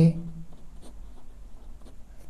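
Ballpoint pen writing on paper, a run of short, faint scratching strokes.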